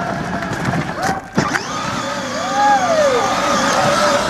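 Kid Trax Kia Soul ride-on toy car's electric drive motors whining steadily as it rolls off pavement onto grass, with a couple of sharp knocks about a second in.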